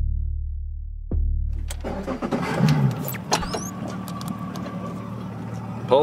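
The end of a piece of electronic background music with a last drum hit. About two seconds in it gives way to a boat's engine running steadily, with a brief rise in pitch soon after it comes in.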